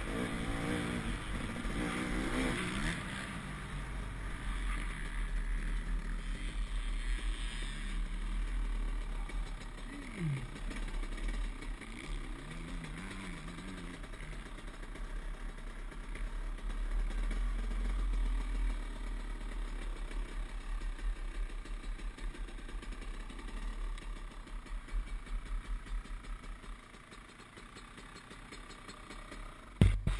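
Dirt bike engine on a helmet camera, with a low wind rumble on the microphone: the engine revs up and down at first, then runs at low revs as the bike rolls slowly, and drops to a quiet idle near the end. A sharp knock comes right at the end.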